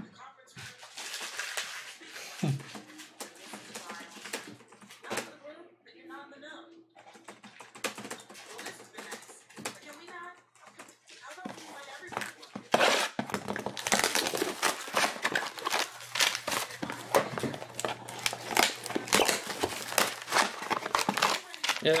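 Plastic wrap and packaging crinkling and tearing as sealed trading-card boxes are handled and opened. The crinkle is a dense crackle that gets louder a little over halfway through.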